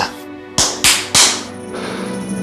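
Three quick hand slaps about a third of a second apart, a fist striking an open palm to count out a round of rock-paper-scissors, over background music.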